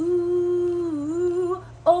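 A woman humming a long held note through pursed lips. The pitch sags about a second in and climbs back, then breaks off briefly before a new sung note starts just before the end.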